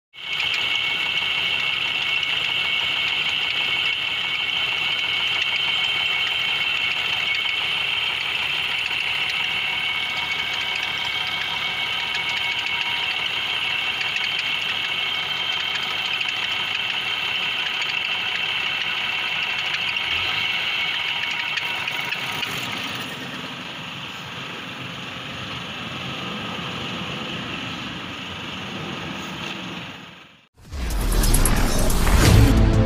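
Bus's rear-mounted diesel engine running steadily in its open engine bay, with a strong high whine over it. About two-thirds of the way through, the sound drops somewhat in level and grows lower.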